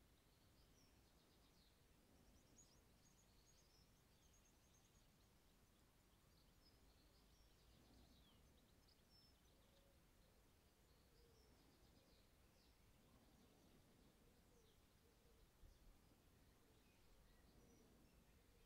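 Near silence outdoors: faint distant birdsong, short high chirps and trills coming and going, over a low background hiss. A couple of faint soft knocks come near the end.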